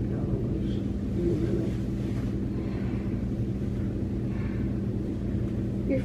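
Steady low hum of room tone, with a faint, brief murmur about a second in and another past the middle.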